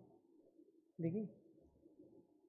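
Speech: one short spoken word from a man about a second in, with a faint low hum around it.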